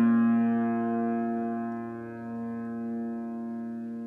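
Upright piano with a chord struck just before, ringing on and slowly fading, while a few soft notes come in about halfway through.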